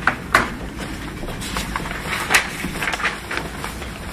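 Paper rustling and a few sharp clicks and knocks on a table, picked up by desk microphones over a steady low room hum.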